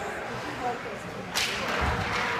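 Hockey sticks cracking together at a faceoff on the ice: one sharp crack about one and a half seconds in, followed by a low thud, over faint rink chatter.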